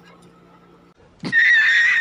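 About a second of quiet room tone, then a loud horse-whinny sound effect with a high, wavering pitch, dubbed in as a comic edit.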